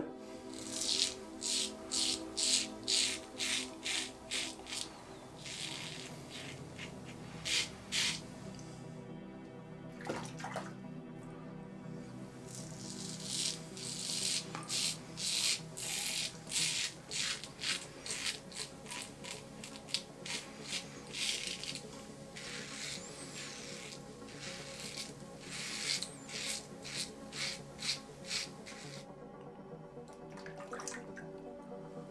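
Leaf Twig razor with a Gillette Nacet blade scraping through lathered beard stubble on the cheek and neck: runs of short rasping strokes, a couple a second, broken by brief pauses. Soft background music plays underneath.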